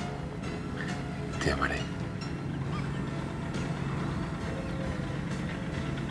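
Soft background music under a dramatic scene, carried by a steady low held note, with one brief noise about a second and a half in.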